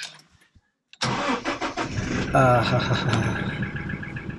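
Toyota Hilux pickup's engine cranked from inside the cab, catching straight away about a second in and settling into a steady idle. It starts readily.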